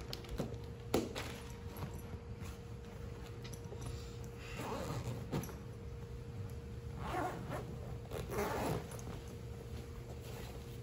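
Zipper of a large nylon baseball equipment bag being pulled open in a few short runs about halfway through and near the end, with gear shifting inside the bag.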